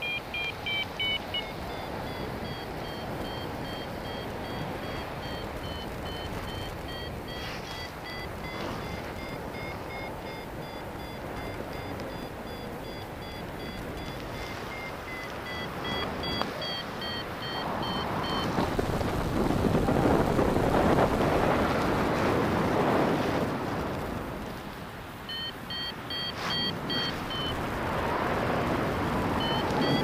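Paragliding variometer giving short repeated beeps, their pitch drifting up and down with the climb rate as it signals lift. The beeping drops out for several seconds about two-thirds of the way through, then returns. Wind noise rushes over the microphone throughout, loudest in the middle stretch where the beeps stop.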